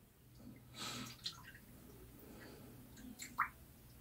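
Faint water sounds from a shaving brush being dipped into a small bowl of water to wet the lather: a soft splash about a second in and a small drip near the end.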